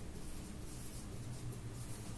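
Marker pen writing on a whiteboard: faint, uneven scratching strokes as words are written, over a low steady hum.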